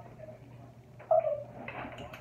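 Small terrier-type dog giving a short whine about a second in, falling in pitch.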